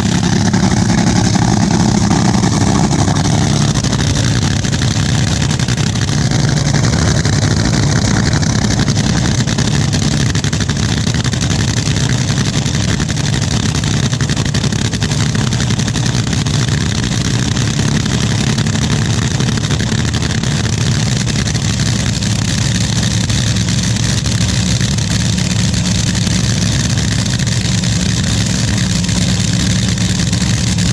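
Top Fuel dragster's supercharged nitro-burning V8 idling steadily, a loud, even rumble with no revs.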